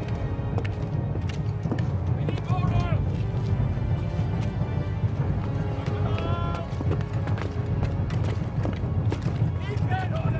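Soldiers' footsteps and clanking armour over a low rumble, with two short shouted calls, about two seconds in and about six seconds in.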